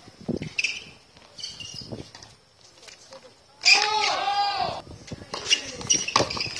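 A tennis rally on a hard court: sharp racket-on-ball strikes and foot noise. About three and a half seconds in comes a louder wavering, squealing pitched sound lasting about a second.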